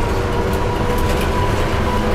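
Tateyama Tunnel electric trolleybus running through its tunnel, heard from inside the cabin: a steady low rumble of the moving bus with a thin steady whine over it.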